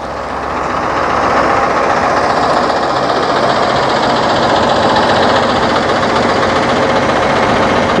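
Shuttle bus's Cummins 6.7 diesel engine idling, heard close up from under the bus: a steady running sound that grows louder over the first second and then holds even.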